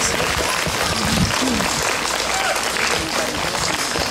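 Audience applauding steadily, with a few faint voices heard through the clapping.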